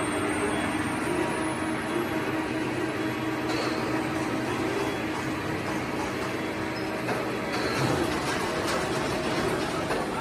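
Steady running noise of a plastic pelletizing line's extruder machinery, an even drone with a faint hum that drops out about seven seconds in.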